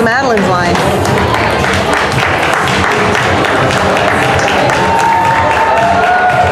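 Audience clapping and cheering over crowd voices and background music, with a wavering whoop right at the start.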